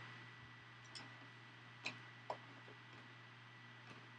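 Near silence with a few faint, scattered plastic clicks and taps as a plastic Stormtrooper figure is handled on its clear plastic display stand, over a faint steady hum.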